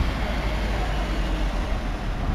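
Steady low rumble of a vehicle engine running close by, with road noise above it.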